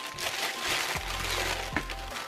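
Clear plastic packaging bag rustling and crinkling as a power adapter and its cord are pulled out of it.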